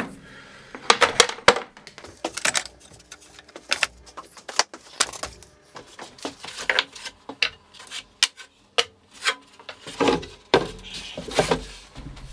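Irregular knocks, clinks and clatter of hard objects being set down and shifted on an aluminium plate inside an MDF box, loading it with weight while the glue underneath cures.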